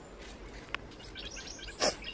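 Dry leaf litter rustling and crackling as a hand rummages in it. There is a sharp click about a third of the way in, and a brief louder crunch near the end.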